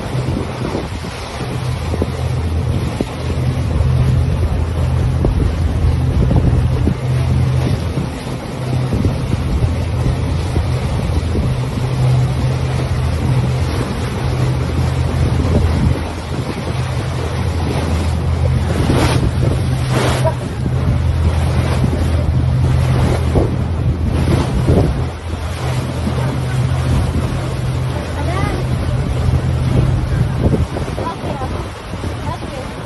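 A small passenger boat's engine running with a steady low hum, with water rushing along the hull and wind buffeting the microphone. A couple of brief, sharper sounds come about two-thirds of the way through.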